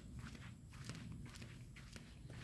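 Faint footsteps of a person walking.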